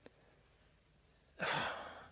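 Near silence for about a second and a half, then a man's audible breath, a soft sigh lasting about half a second.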